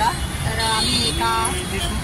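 Low, steady engine rumble of a road vehicle running close by, with short bits of voices over it.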